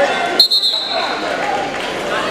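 Wrestling referee's whistle: one short, shrill blast about half a second in, over the chatter of a crowd in a large gym.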